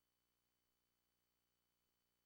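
Near silence: a blank, signal-free stretch with no audible sound.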